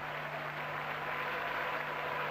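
Steady, even hiss-like background noise with a low constant hum underneath, unchanging throughout, with no distinct events.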